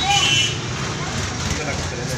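A short voice in the first half second over a steady low rumble of street traffic.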